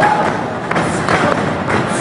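A few thuds of wrestling strikes landing as one wrestler hits another against the ring ropes in the corner.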